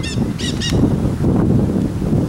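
Nanday parakeets giving two short, high calls in quick succession about half a second in, over wind rumbling on the microphone.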